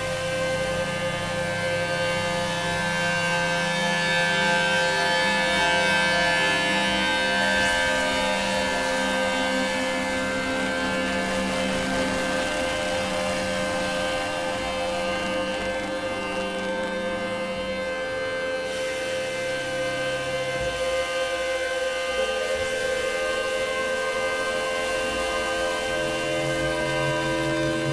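Experimental electronic drone music: many layered synthesizer tones held steady, with the low notes shifting a couple of times partway through.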